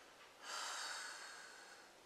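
A person's soft breath out, a quiet rush of air that starts about half a second in and fades over about a second and a half.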